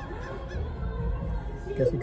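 R&B music with a heavy bass line playing from a nearby parked car's stereo, heard from inside another car. A few brief pitched vocal sounds come in the first half second, and a man starts talking at the very end.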